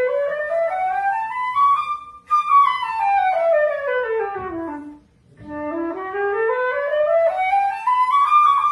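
Solo silver concert flute playing stepwise runs. It rises over about two seconds, breaks briefly, falls back down, pauses for a moment just past the middle, then climbs again.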